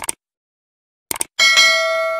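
Subscribe-button animation sound effect: a short click at the start and a quick run of clicks about a second in. These are followed by a notification bell ding that rings on in several steady tones, slowly fading.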